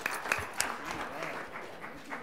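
Audience applauding, with scattered voices underneath; the clapping thins out and fades over the second half.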